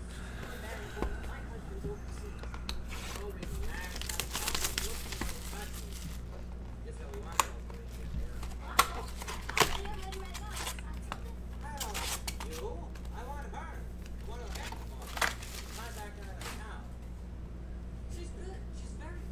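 A cardboard hobby box of Upper Deck Credentials hockey cards is opened and its foil card packs are lifted out and set down, with crinkling and rustling. A few sharp clicks come about seven to ten seconds in and once more later.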